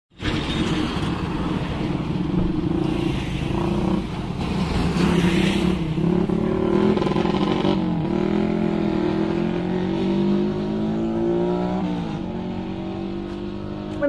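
Road traffic: motor vehicle engines running as they pass on the road, with a low rumble. Partway through, one engine's pitch climbs slowly for a few seconds, then drops back.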